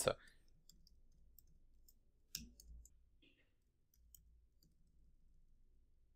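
Faint, sparse computer-keyboard clicks of someone typing, with one louder click about two and a half seconds in.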